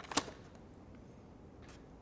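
A single sharp plastic click as the welding helmet's battery-compartment parts are handled, then quiet room tone with one faint tick near the end.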